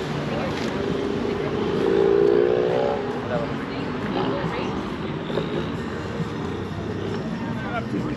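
A car engine running, its pitch and loudness rising briefly about two seconds in, over a steady low rumble, with people's voices in the background.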